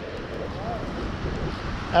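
Steady wind noise on the microphone, mixed with small surf waves washing onto the beach.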